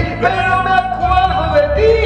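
A man singing a ballad into a handheld microphone, holding long notes that bend and slide between pitches, over a recorded backing track with a steady low bass line.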